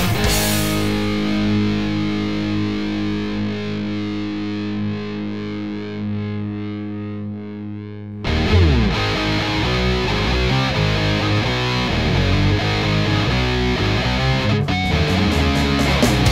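Punk/hardcore rock recording: a distorted electric guitar chord rings out and fades for about eight seconds, then the full band comes back in loudly.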